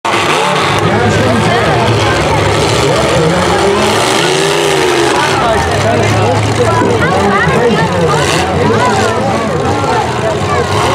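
Full-size demolition derby car engines running loud, revving up and down, with a crowd of voices chattering underneath.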